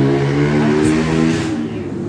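A motor vehicle engine running, its pitch shifting up and down, then fading about one and a half seconds in.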